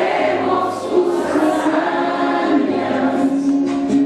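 Many voices singing a song together in chorus, with long held notes.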